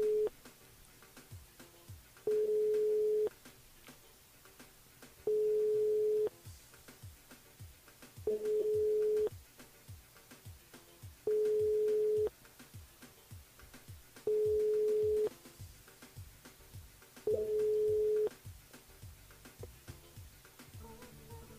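Telephone ringback tone of an outgoing call ringing at the other end: a steady beep about a second long, repeating every three seconds, six times, with the call not yet answered.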